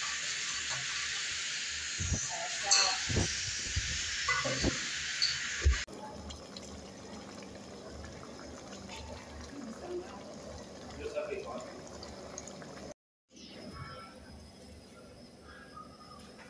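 A steady hiss from a metal cooking pot on the stove as meat is mixed in it by hand, with knocks and clicks against the pot. The hiss stops abruptly about six seconds in, leaving quieter background sound.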